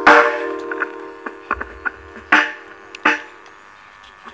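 A sustained musical chord rings out and fades over the first second and a half, followed by a few scattered sharp knocks and clicks.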